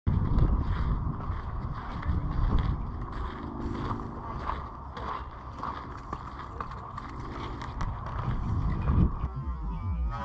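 Wind buffeting the microphone in an uneven low rumble, with light scuffs and ticks of footsteps and brush while walking along a sandy desert trail.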